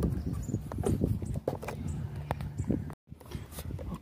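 Irregular light knocks, taps and rubbing from hands working clear double-sided tape and a flexible solar panel on a car's roof, with a brief drop to silence about three seconds in.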